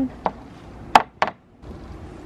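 Hard plastic knocks at a plastic compost bin as a colander of kitchen scraps is tipped in: a light tap, then two sharp knocks about a quarter second apart about a second in, the first the loudest.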